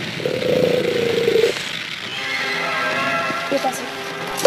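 A held, steady-pitched cry lasting about a second near the start, then background music of sustained tones.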